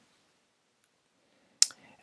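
Near silence, then a single short, sharp click about one and a half seconds in.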